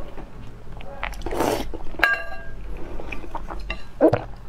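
Utensils on a stone bowl of noodle soup: a metal spoon strikes the bowl about halfway through with a short metallic ring, among small clicks of chopsticks and spoon. Just before the clink comes a brief breathy rush of noise.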